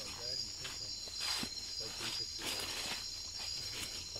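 Steady high-pitched chorus of night insects in tropical rainforest, with footsteps and leaves brushing as people push through the undergrowth.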